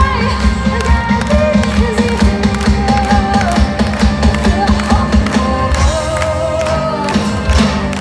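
A folk metal band playing live over a festival PA, with a steady drumbeat under held melodic lead lines.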